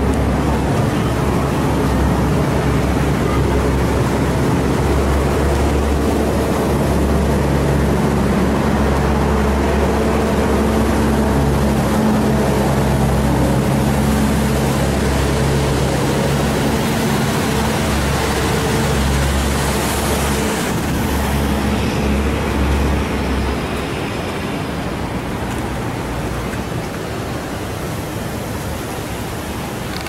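A steady low mechanical hum, as from an engine or machinery running, over a constant rushing noise. The low hum stops about 23 seconds in, and the sound drops slightly after that.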